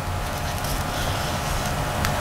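Steady background noise: an even hiss with a low hum, and no distinct events.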